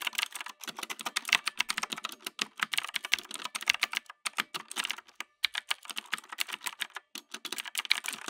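Keyboard typing: rapid, irregular key clicks with a few brief pauses, matching a search query being typed.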